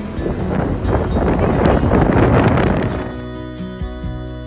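Gusty wind buffeting the microphone, rising to its loudest about two seconds in and dropping away near three seconds. Background guitar music plays underneath and stands out once the wind falls.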